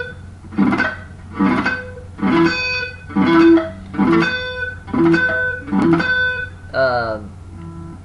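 Electric guitar rake: the pick scrapes across muted strings just before a note on the twelfth fret of the B string rings out. The figure is repeated about eight times, a little faster than once a second.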